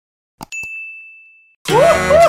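A mouse click, then a single bright notification-bell ding that fades out over about a second. Loud music cuts in near the end.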